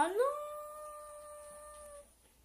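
A young girl's voice sliding up in pitch into one long held note, like a howl, that fades gradually and cuts off abruptly at the end.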